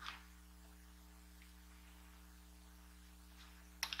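Near silence: a faint, steady electrical mains hum, with one brief soft noise right at the start.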